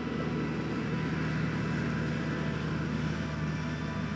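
A four-wheel-drive vehicle's engine running at a steady low hum, under an even hiss of rain.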